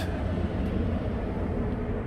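A yacht's cabin air conditioning rumbling steadily, cooling the guest cabin on a very hot day.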